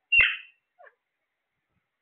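A caged parrot gives one short, loud squawk, followed about half a second later by a brief falling chirp.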